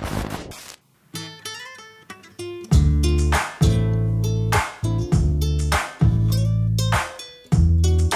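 A brief burst of static-like hiss, then an acoustic guitar starts picking single notes. About three seconds in, deep electric bass notes come in, each held for most of a second, in a slow repeating pattern under the guitar.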